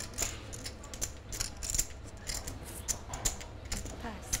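Poker chips clicking together as they are handled at the table, a rapid irregular run of small clicks.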